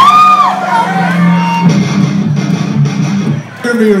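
Electric guitar and bass playing through stage amplifiers between songs: a steady low hum, a short high gliding note at the start, then a loose low riff from about halfway.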